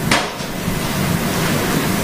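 Steady rushing noise, like loud ambient hubbub on an outdoor microphone. It starts abruptly with a short click, and a faint low hum runs beneath it.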